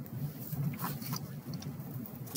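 Faint steady low hum of background noise with a few soft clicks.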